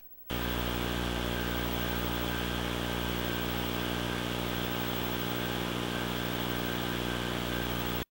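A steady, unchanging buzzing hum with many evenly spaced overtones over a hiss, starting a moment after a brief silence.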